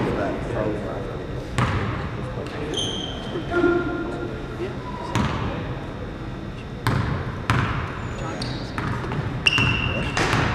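A basketball bouncing on a hardwood gym floor a handful of times, each bounce a sharp knock that rings in the hall, over a background of voices.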